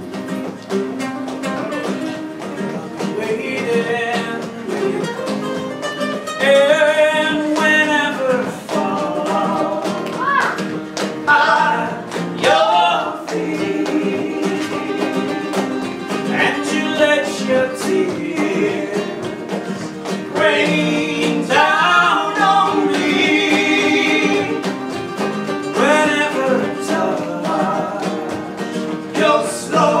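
Live flamenco-style band music: acoustic guitars playing with rhythmic hand clapping, and a male voice singing in phrases over them.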